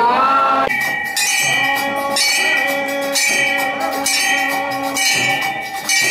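Brass temple bells rung by hand over and over, several at once, with a steady metallic ringing that overlaps from stroke to stroke. Chanting voices break off less than a second in as the bells take over.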